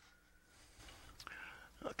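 Faint hiss and breathy noise with a couple of light clicks as a hand-cranked megohmmeter (megger) is handled and set down on a workbench.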